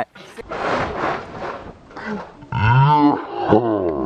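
A breathy rush of noise, then a loud, drawn-out wordless yell of excitement about halfway through, sliding down in pitch.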